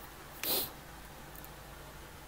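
A quiet pause with a faint steady low hum and one short, soft breath sound about half a second in.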